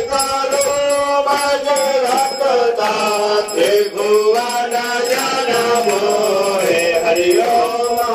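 Hindu aarti hymn chanted to music, with voices holding and sliding between notes.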